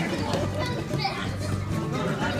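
Young children's voices and play noise over background music.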